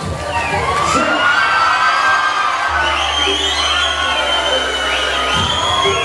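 Concert crowd cheering with many high-pitched voices, and a low bass note holding for a few seconds in the middle.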